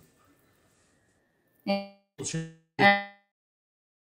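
Three short plucked, guitar-like notes about half a second apart, starting near the middle, each one dying away quickly.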